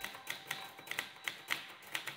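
Manual typewriter being typed on: its type bars strike in a quick, uneven run of clicks, about five a second.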